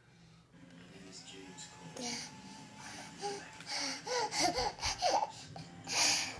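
A toddler's excited high-pitched squeals and babbling, bending up and down in pitch and bunched in the second half, with breathy puffs of air in between.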